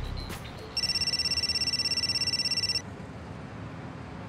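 Mobile phone ringing: one fast electronic trill lasting about two seconds, starting just under a second in and stopping suddenly.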